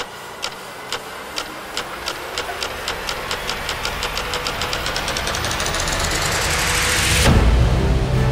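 Suspense score riser: a ticking pulse that starts at about two ticks a second, speeds up and grows louder until it blurs into a rising rush, then breaks into a loud deep boom about seven seconds in.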